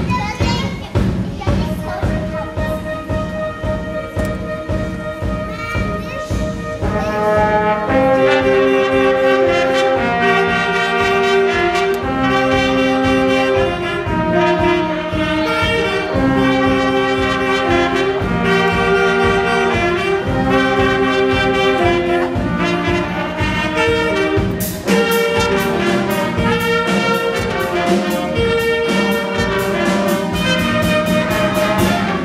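Live band of trumpets and trombones playing a melody over a drum kit. The opening seconds carry mostly drum strokes, and the brass comes in strongly about seven seconds in. Near the end the music changes abruptly to another brass-led passage.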